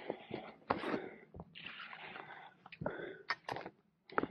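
A hiker's footsteps on a dirt and rocky trail, irregular scuffs and crunches, mixed with the hiker's breathing.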